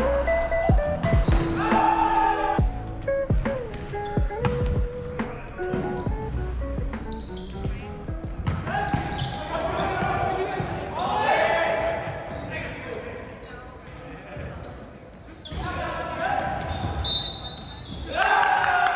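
Indoor volleyball rally: sharp hits of the ball and players' shouts echoing in a large gym. Background music plays through the first part.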